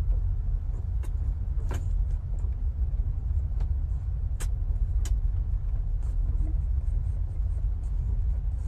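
Steady low rumble of a moving train carriage heard from inside a sleeper compartment, with a few sharp clicks scattered through it.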